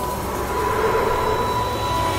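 Trailer sound design: a rumbling, metallic drone with a steady high tone held through it, swelling near the end as it builds toward a hit.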